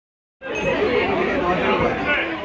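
Chatter of several voices, likely children's, talking over one another; it cuts in suddenly about half a second in.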